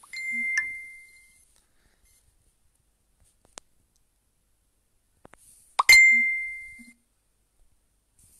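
Two identical short electronic dings, one right at the start and one about six seconds in, each a single clear tone fading over about a second, like a phone's notification chime. A sharp click comes just before the second ding.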